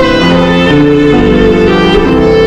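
Solo violin played with the bow: a melody of sustained notes, each held for about half a second before moving to the next pitch.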